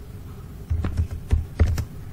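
Computer keyboard being typed on: a quick run of about five keystrokes starting just under a second in.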